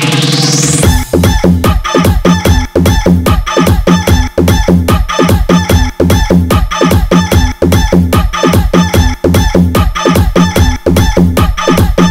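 Electronic dance remix: a rising sweep builds to a drop about a second in, then a fast, loud, repeating beat with heavy bass. Rooster crowing and clucking samples are mixed into the track.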